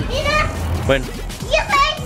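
Children's voices as they play, with a man's voice speaking briefly.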